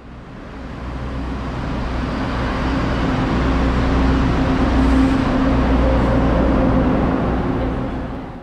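Passenger train running past close along a station platform: a rumble of wheels on the rails that builds to its loudest about four to five seconds in and then eases, with a steady hum underneath.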